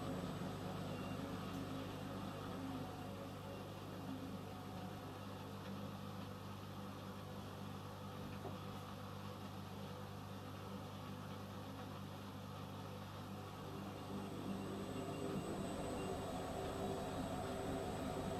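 Several Hotpoint washing machines running a spin-only cycle together: a steady motor hum with drums turning at low speed, growing louder about three seconds before the end as the drums speed up toward a 300 rpm spin.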